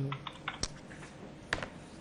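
Computer keyboard being typed on: a quick run of light key clicks in the first half second, then single key clicks about two-thirds of a second and a second and a half in.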